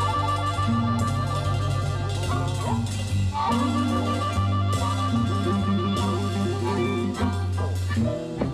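Electric blues band playing an instrumental passage between vocal lines: harmonica holding long, wailing notes over electric guitar, a steady bass line and drums.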